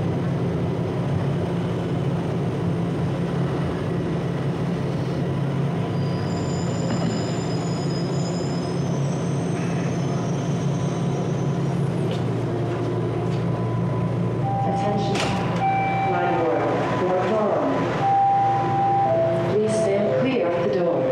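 Inside a subway car: the train's steady running hum as it comes into a station, with thin high squeals about a third of the way through. In the last few seconds come a few held tones and sharp clicks.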